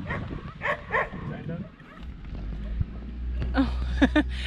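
A dog barks twice in quick succession about a second in. Then, from about halfway, a car engine idles with a steady low hum, heard from inside the cabin.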